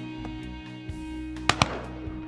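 Two sharp shotgun shots in quick succession, a fraction of a second apart, about one and a half seconds in, over a steady music bed.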